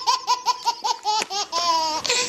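A baby laughing hard: a fast run of high-pitched laugh bursts, several a second, then a longer drawn-out laugh near the end.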